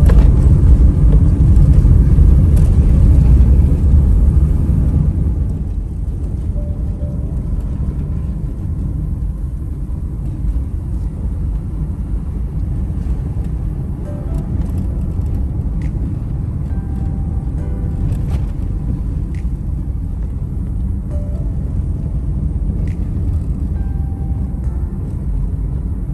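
Car cabin rumble from the engine and tyres while driving on a rough country road, louder for the first few seconds and then steady, with faint music underneath.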